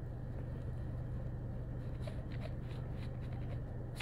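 Steady low hum inside a parked car's cabin, with a few faint ticks about two seconds in.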